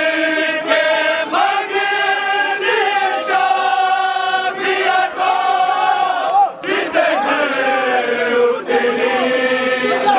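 Men's voices chanting a Muharram mourning lament (nauha) with long held notes, the melody pausing briefly about six and a half seconds in before going on.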